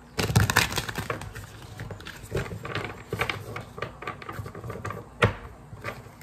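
A Light Seers Tarot deck being shuffled by hand: a rapid, uneven run of papery card clicks and flicks, with one sharper snap about five seconds in.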